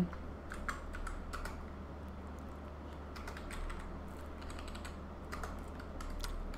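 Computer keyboard keys tapped in a few scattered keystrokes, a cluster about half a second to a second and a half in and a few more later, over a low steady hum.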